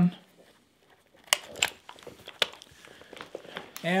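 Scuba fins being slipped onto a carabiner clip on a BC harness: a few sharp clicks from the clip and gear, with faint rustling of the fin straps between them.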